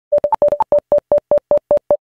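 A run of about a dozen short electronic beeps, mostly on one pitch with two higher ones near the start, coming roughly five a second: a synthesized intro sound effect.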